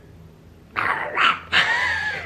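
A person doing a Donald Duck voice impression, starting a little under a second in after a brief quiet.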